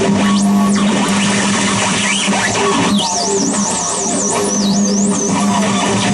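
Harsh noise from a contact-miked metal plate worked by hand and run through fuzz and distortion pedals, delay and a filter bank: a loud, dense wall of distorted noise over a steady low hum. About three seconds in, a high whistling tone wobbles quickly up and down for around two seconds.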